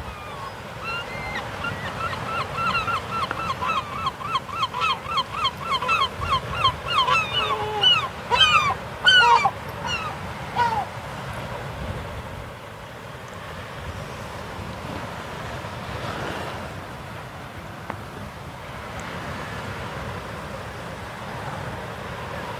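Birds calling in a fast, regular series of short pitched notes, about three or four a second, growing louder and then breaking into a few larger, falling calls before stopping about eleven seconds in. A steady wash of surf and wind runs underneath.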